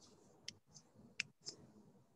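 Faint, sharp clicks of a computer mouse: two distinct clicks about 0.7 s apart with a few softer ticks between them, as the slides are advanced.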